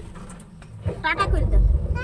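A short spoken phrase from passengers seated in an electric rickshaw, then a low rumble in the second half as the rickshaw ride gets under way.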